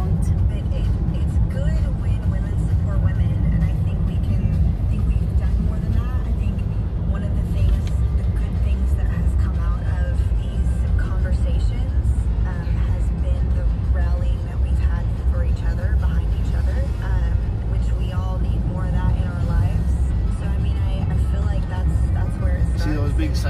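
Steady low rumble of a moving car heard from inside the cabin: engine and tyre noise on the road.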